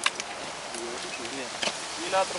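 Faint voices in the background with a few sharp light clicks, one at the very start and one about one and a half seconds in.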